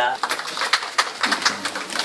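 Handling noise from a handheld camera being moved: irregular rustles and knocks, with brief voices in the room.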